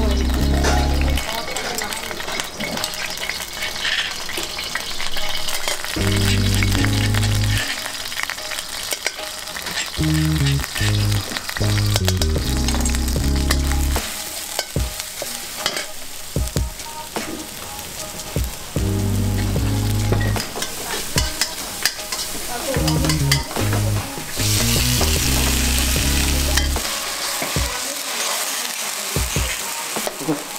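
Stir-frying in a carbon-steel wok over a gas burner, making spicy basil with seafood. Oil sizzles steadily while a metal spatula scrapes and clicks against the pan. A louder burst of sizzling comes about three-quarters of the way in, as the chilies and seafood fry.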